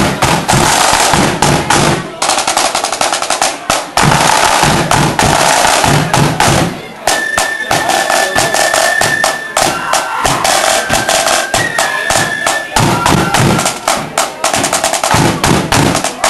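Marching flute band playing: snare drums rolling and a bass drum beating throughout, with the flute melody standing out clearly from about halfway through.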